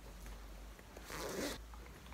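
A zip on a fabric bag being pulled open or shut in one short rasp of about half a second, with faint handling rustle around it.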